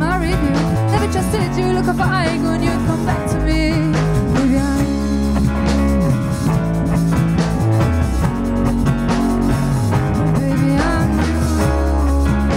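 Live pop-rock band playing: electric guitar, bass and drums, with a woman singing lead over them.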